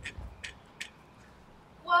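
A small gift package being opened by hand: three short, light ticks and rustles within the first second. A woman starts speaking near the end.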